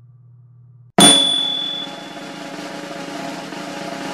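A faint low hum, then about a second in a sudden loud percussive hit with high ringing tones that fade, leading into steady background music.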